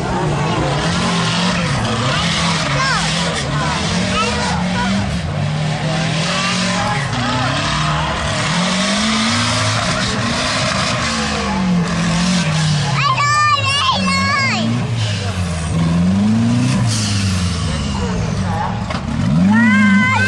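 Off-road 4x4 truck engines revving up and down over and over, their pitch rising and falling as the trucks drive the dirt course. A shrill wavering sound cuts through just past halfway and again near the end.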